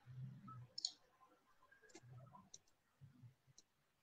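Near silence: faint room tone broken by a few soft, short clicks and a few faint low blips.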